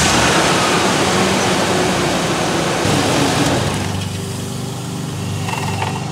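Ford E350 van's 5.4-litre V8 running just after a cold start at a fast idle. Its speed and loudness ease down over the first few seconds into a steadier, lower idle.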